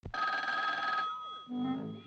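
A desk telephone's bell rings once for about a second and fades off; about a second and a half in, music begins with a low moving melody.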